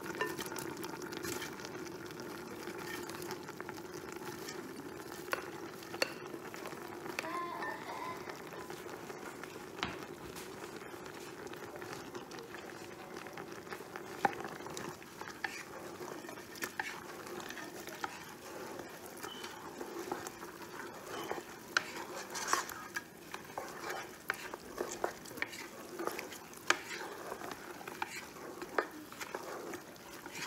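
Chopped okra poured into a pot of steaming meat stock, then stirred with a wooden spoon: the spoon scrapes and knocks against the pot over a steady low hum, the knocks coming thick and fast in the second half.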